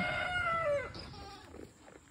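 A rooster crowing: the long held last note of the crow, which drops in pitch and fades out about a second in. Faint scattered clicks follow.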